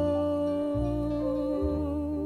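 Female jazz singer holding one long sung note with a slight vibrato, over a small jazz band whose low bass notes change about every second.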